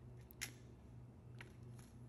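Near silence with a faint low hum and three faint small clicks as hands handle the model track piece and its loose wires.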